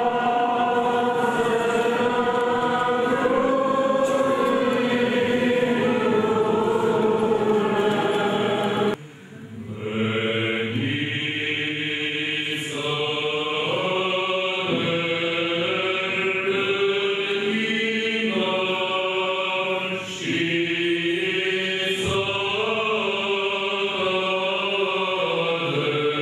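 Orthodox liturgical chant sung by a group of voices, holding long notes and moving in steps from one pitch to the next, with a sudden brief break about nine seconds in.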